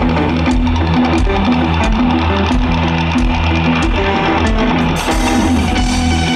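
Live rock band playing the instrumental intro of a song: electric guitars over a repeating bass line and a steady drum beat. The sound gets fuller and brighter about five seconds in.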